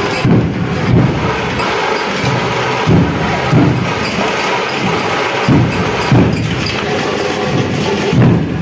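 Procession drumming: deep drum strokes in pairs, a pair about every two and a half seconds, over a continuous wash of higher percussion and street noise.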